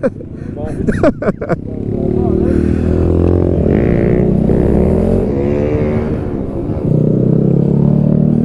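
Honda Grom's 125 cc single-cylinder engine running as the bike is ridden, its pitch rising and falling with the throttle. The bike still runs after a crash, with everything seemingly working.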